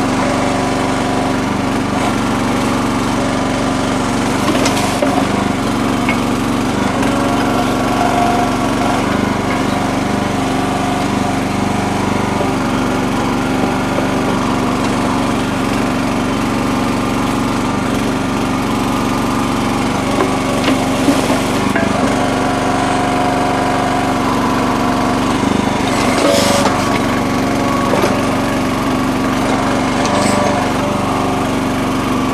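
Small gas engine of a Red Rock mini towable backhoe running steadily under load, driving the hydraulics as the boom and bucket dig. A few brief scrapes and knocks come from the bucket working mud and rock.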